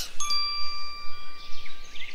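A cartoon 'ding' sound effect: one bright bell-like chime struck a moment in, its tone ringing on and fading away over the next second or so.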